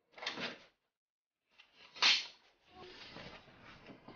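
An apartment door being shut: a short clatter as it closes, then a sharper, louder knock about two seconds in, followed by faint shuffling.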